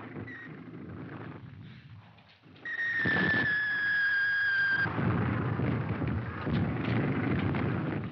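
A shrill whistle starts suddenly a little under three seconds in and is held for about two seconds, sliding slightly down in pitch. It gives way to a loud, low, rumbling din.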